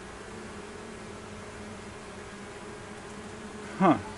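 Steady hum of a honeybee colony from an opened hive box, with a frame lifted out.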